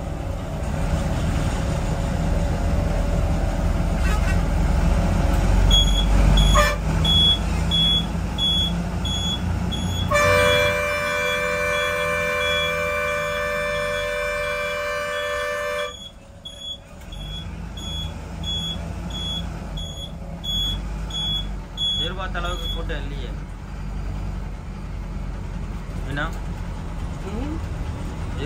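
Inside a bus cab in traffic: the bus's engine runs steadily under a high electronic beep that repeats about twice a second. In the middle a horn sounds in one long blast of about six seconds. After the horn the engine sound drops.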